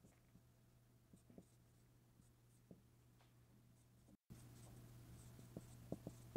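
Faint sound of a dry-erase marker writing on a whiteboard: a few scattered soft taps and strokes of the marker tip over a low, steady hum.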